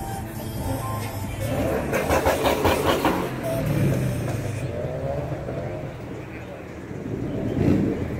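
Car-meet ambience: a car engine running, with background voices and music. The sound swells for a moment about two seconds in.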